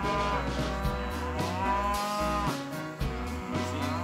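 Cattle mooing: two long moos, each rising in pitch and then held, the first lasting about two and a half seconds and the second starting near the end, over background music.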